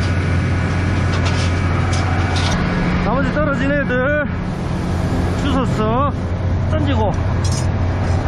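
Knuckle-boom crane truck's diesel engine running with a steady low hum, whose pitch shifts about two and a half seconds in. From about three seconds in, a voice is heard in several short wavering phrases over the engine.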